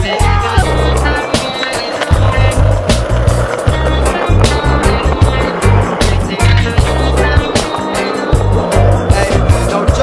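Skateboard wheels rolling on concrete under a reggae-style music track with a heavy bass line and a steady drum beat; the vocals stop for an instrumental stretch.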